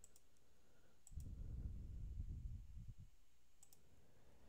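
A few sharp computer clicks: a pair near the start, one about a second in and a pair near the end. A low rumble runs for about two seconds in the middle.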